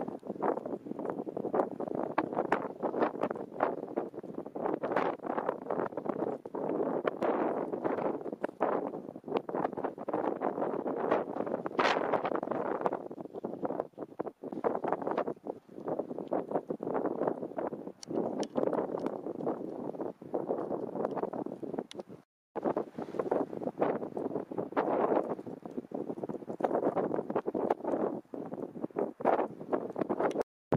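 Strong wind gusting against the microphone, a rough rushing noise with rapid crackles, cutting out for an instant about two-thirds of the way through.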